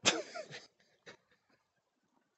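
A man makes a short, breathy non-speech vocal sound, then a smaller one, with a faint click about a second in.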